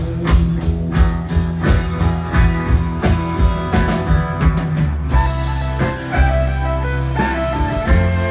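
Live country band playing an instrumental passage: fiddle, electric guitar, upright bass and drums, with a steady beat and no singing.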